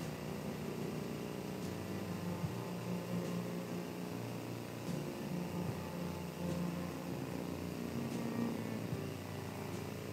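Room tone: a steady low rumble and hum with a few faint clicks.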